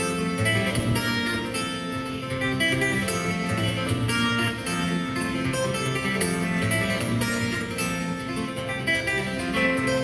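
Solo acoustic guitar played fingerstyle, low bass notes ringing under plucked higher notes in a steady flow.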